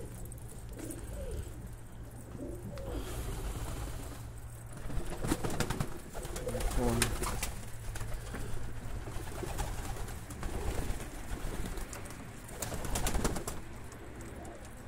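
Domestic pigeons cooing softly and repeatedly, with louder rustling and clattering about five to seven seconds in and again near the end.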